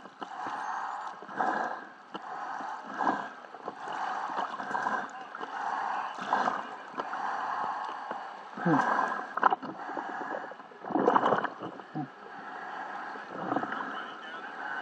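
Muffled water sloshing and splashing around a diver moving at the surface, swelling in repeated surges every second or two. A few short grunt-like voice sounds come in the second half.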